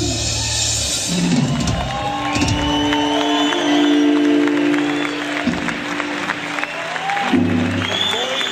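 Live electric guitar and band music on long held notes, with a crowd cheering and applauding.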